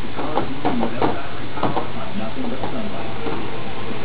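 Indistinct speech over a steady background hiss.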